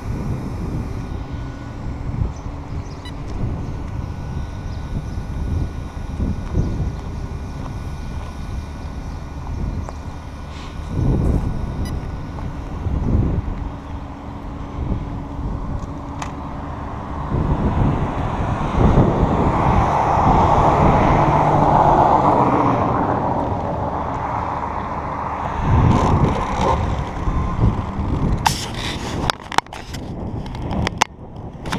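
Rumble and wind noise from a camera riding on a radio-controlled car running over rough asphalt, with a faint steady whine, and a louder rush of noise in the second half. Sharp clicks and rubbing near the end as the camera is handled.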